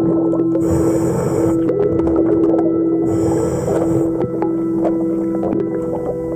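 Underwater sound from a diver's camera in a marina. A steady hum of several held tones runs throughout. A scuba regulator hisses twice, about one and three and a half seconds in, as the diver breathes. Scattered clicks sound around it.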